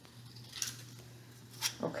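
Scissors cutting construction paper into small squares: two short snips about a second apart, one about half a second in and one near the end.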